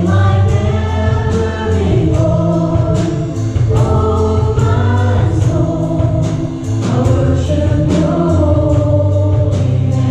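Live gospel worship song: women's voices singing the melody over a band of keyboards, bass and drums, with a steady beat.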